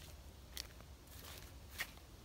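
Quiet outdoor background with a few short, soft rustles or clicks, the clearest one near the end, from movement close to the microphone.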